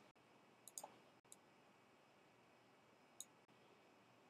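Near silence broken by a few faint computer mouse clicks: a quick pair a little under a second in, another shortly after, and one more near the end.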